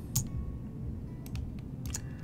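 A few light clicks of computer input at the desk: one just after the start, a quick pair a little past a second in, and one near the end, over a low steady room hum.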